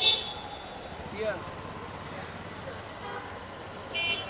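Two short, high-pitched vehicle horn toots, one right at the start and one at the end, over steady street traffic noise.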